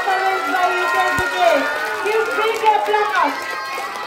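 Many high-pitched children's voices talking and calling over one another, with a brief low thump about a second in.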